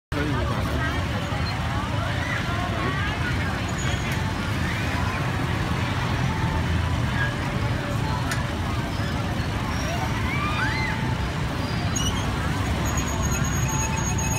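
Busy night street: a steady low rumble of motorbike and car traffic mixed with the chatter of a crowd of people.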